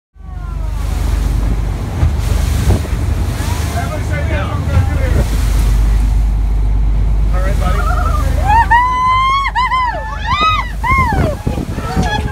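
Wind buffeting the microphone and water rushing along the hull of a moving fishing boat in choppy sea, a steady loud rumble, with voices. Near the end come several high calls that rise and fall in pitch.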